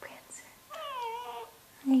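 An F1 Savannah cat meowing once, a call of under a second that falls in pitch.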